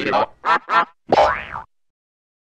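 Edited cartoon sound effects from the Klasky Csupo logo: three short warbling squeaks in quick succession, then a longer wobbling one that cuts off abruptly about a second and a half in.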